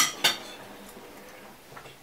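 Knife and fork clinking and scraping on a dinner plate while cutting food: two sharp clinks at the start, then quieter.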